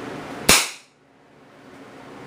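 A single shot from a six-inch-barrel Heritage Arms revolver firing a .22 Short CCI CB (conical ball) round: one sharp crack about half a second in.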